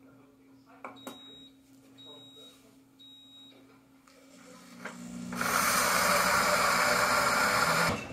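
A Pampered Chef blender gives three short high beeps about a second apart, then its motor winds up and runs loudly on the grind setting, chopping whole coffee beans into ground coffee. The grinding cuts off suddenly near the end.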